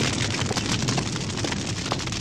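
Large fire burning: a steady rush of noise dense with small crackles.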